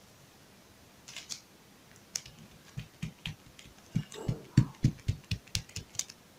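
Light clicks and taps from hands handling rhinestone trim strips on a clear plastic sheet. They are sparse at first and come thicker and louder over the last two seconds.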